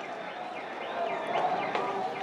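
Street riot noise: a crowd shouting, with many high rising-and-falling tones layered over it.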